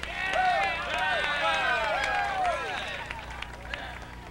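Several people's voices calling and whooping over one another, pitches sliding up and down, without clear words, over a steady low hum.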